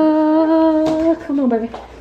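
A woman's voice humming one long held note, with no words, that slides down in pitch in a short falling glide about a second and a half in.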